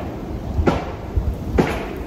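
Biting and crunching a raw bean pod, two short crisp crunches, over a low rumble of wind on the microphone.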